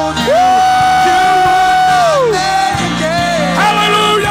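Live worship band music: a singer holds one long note that slides down after about two seconds, over steady keyboard and electric guitar accompaniment, with more singing coming in near the end.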